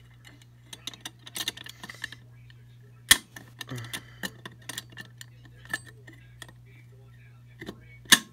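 Clicks and small knocks of a Mircom pull station being reset with a thin key: metal tool tapping and scraping in the plastic housing, with one sharp click about three seconds in. A steady low hum runs underneath.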